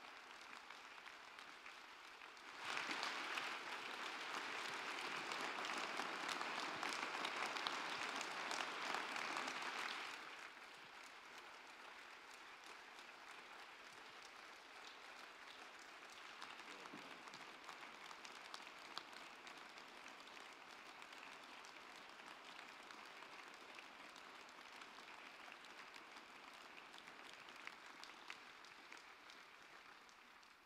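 Audience applauding. The applause swells louder about two and a half seconds in, drops back after about ten seconds to softer, sustained clapping, and fades out near the end.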